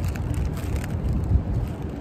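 Wind rumbling on the microphone, a steady low noise with no distinct events.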